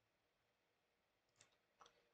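Near silence with two faint computer-mouse clicks about a second and a half in, less than half a second apart.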